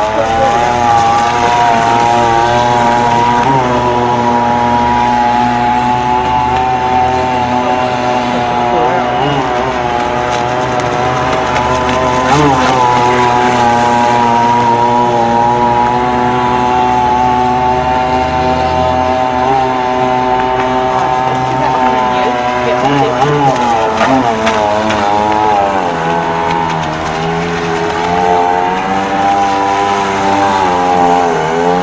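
The 22.5cc Zenoah two-stroke petrol engine of a radio-controlled model racing boat running hard with a steady, high engine drone. Its pitch wobbles up and down in the last few seconds as the revs change.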